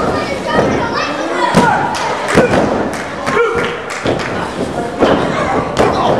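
Repeated heavy thuds of wrestlers' bodies striking the canvas of a wrestling ring, with shouting voices in between.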